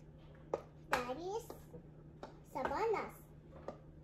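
A toddler's voice: two short high-pitched utterances about a second and a half apart, with a few light clicks between them.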